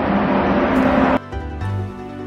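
Loud, noisy railway-platform din with a steady low hum, cut off suddenly about a second in by soft background music with held notes and a low bass pulse.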